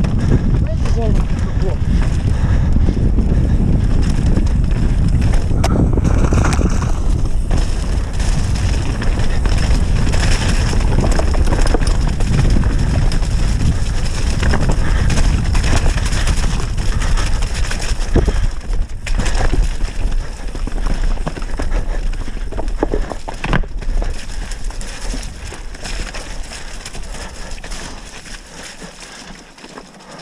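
Mountain bike rattling and clattering down a rocky trail, with wind buffeting the camera's microphone and scattered sharp knocks as the wheels hit stones. It grows quieter over the last few seconds.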